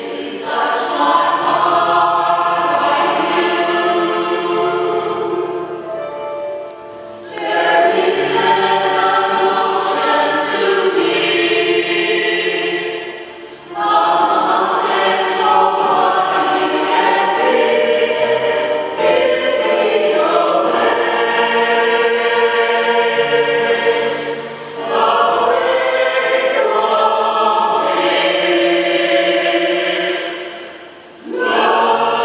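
A small choir of women singing a gospel song together, in long phrases with short breaks between them.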